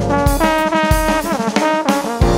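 Jazz brass section, with trombones to the fore, playing sustained chords over a drum kit. The chord slides down in pitch in the second half.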